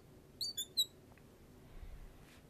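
Marker tip squeaking on a glass writing board as a word is written: three short high chirps in the first second, then the writing stops. A faint low bump near the end.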